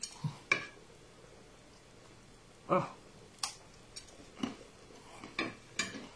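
Light clinks and taps of a ceramic dish on a table as food is handled, about eight short separate knocks spread through the few seconds, with a brief spoken "oh" near the middle.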